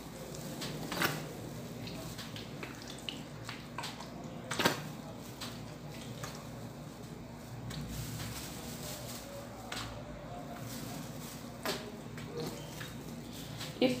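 Quiet handling sounds of a plastic squeeze bottle dribbling syrup over a sponge cake layer in a plastic lining, with three light taps or clicks spread through.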